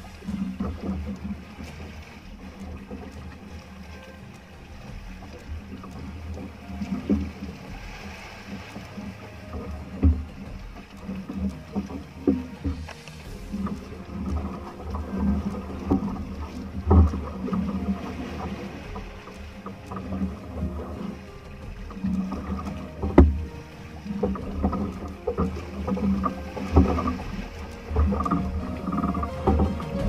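Water splashing and irregular knocks against the hull of a wooden outrigger fishing boat as a large swordfish thrashes alongside, over a steady low hum. The sharpest knock comes about two thirds of the way in.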